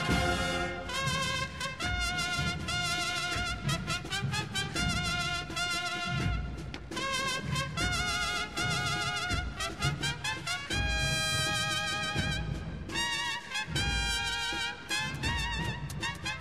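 Brass music led by trumpets, playing long held notes with vibrato over a low beat.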